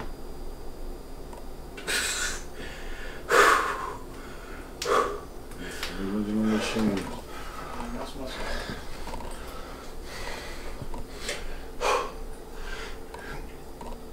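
A man breathing hard, with several short, sharp, forceful exhales while he flexes and holds posing positions, the loudest about three seconds in. A brief voiced grunt comes about six seconds in.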